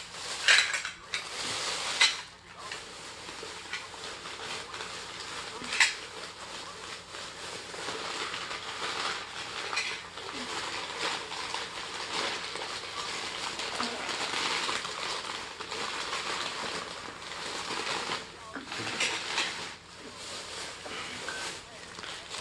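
Plastic shopping bag and plastic wrapping rustling and crinkling steadily as items are handled and unwrapped, with three sharp clinks of small metal plates and bowls in the first six seconds.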